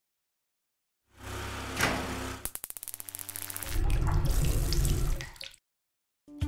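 Logo-reveal sound effect: after a second of silence a swelling whoosh, then a fast run of clicks, then a low rumble that is the loudest part and fades away.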